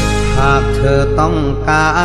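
Thai luk thung song: a male singer holds a wavering, ornamented sung line over a steady band accompaniment, the voice coming in about half a second in.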